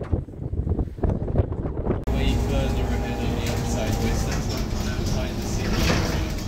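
Inside a moving city bus: a steady low rumble of the drive and road noise, with voices, starting suddenly about two seconds in after a short stretch of uneven outdoor street sound.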